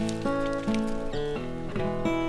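Background music: an acoustic guitar picking a quick run of notes.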